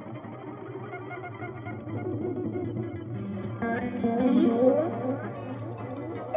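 Music: effects-laden, distorted electric guitar over a steady low bass line. About three and a half seconds in, a louder phrase of sliding, rising guitar notes comes in.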